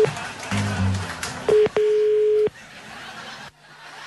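A telephone ringing tone on an outgoing call: one steady mid-pitched tone, a short blip and then held for about three-quarters of a second, heard over the line while the call waits to be answered. Background music plays under it in the first second and a half, and after the ring the line drops to a faint low hum.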